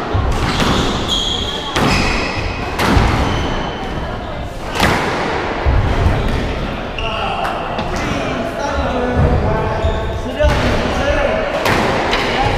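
Squash rally: the rubber ball cracking off rackets and the court walls every second or two, echoing in the court, with short high squeaks in between. Voices take over in the second half as the rally ends.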